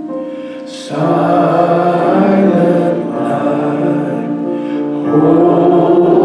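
Congregation singing a slow hymn together in long held notes. One phrase fades out, a louder phrase comes in about a second in, and another begins near the end.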